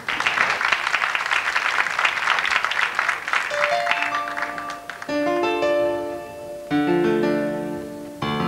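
Studio audience applause for the first three seconds or so. About three and a half seconds in, an Arabic studio orchestra takes over, opening the song's introduction with held chords on electronic keyboard and strings.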